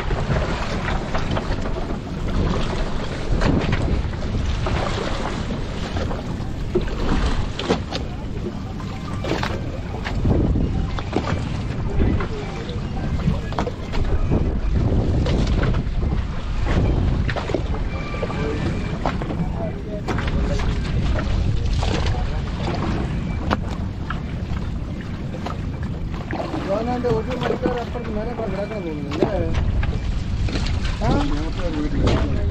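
Wind buffeting the microphone over water slapping and splashing around a fishing boat as a wet net is hauled in by hand, with many short knocks and splashes. Men's voices come in near the end.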